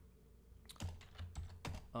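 Typing on a computer keyboard: about five keystrokes in quick succession, starting a little under a second in.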